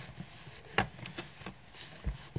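Microfiber cloth rubbing over a stamp in a Stamparatus stamping platform, wiping off green ink, a faint rustle with a few light clicks; one sharp click a little under a second in is the loudest sound.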